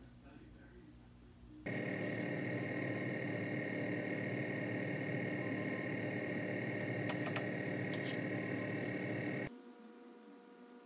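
A steady machine hum with a high whine, starting suddenly about two seconds in and cutting off suddenly near the end.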